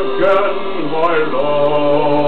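A man singing a slow love song over a karaoke backing track, his voice wavering in the first second, then settling into longer held notes.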